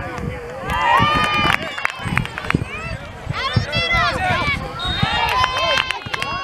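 Sideline spectators at a youth soccer match, shouting and calling out in several high, overlapping voices with no clear words. The voices swell loudest about a second in and again in the second half as play goes to the goalmouth.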